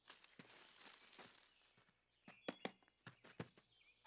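Near silence with a few faint, soft footsteps in the second half: a cartoon character creeping up on foot.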